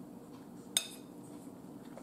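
A metal fork clinks once against a ceramic bowl, a single sharp click under a second in, as pasta is gathered onto it.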